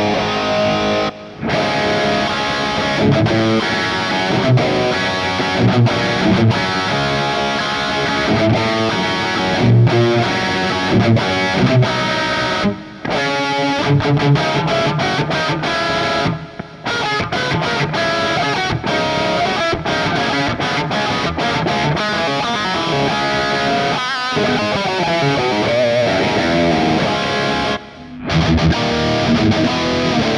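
Distorted electric guitar riffs played through a Kemper Profiling Amplifier on high-gain Bogner amp profiles. The playing is broken by a few brief silences, where the profile changes, one of them near the end.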